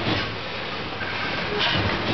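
A bagging machine and its inclined outfeed conveyor running steadily, with a louder noisy burst from the machine about every two seconds.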